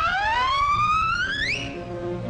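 A cartoon sound effect: a siren-like whistle that glides upward for almost two seconds, climbing slowly, then shooting up sharply and cutting off near the end. Orchestral music plays underneath.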